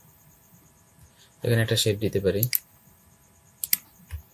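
A man's voice speaks briefly about a second and a half in. Near the end come two quick, sharp clicks in close succession from the computer being worked.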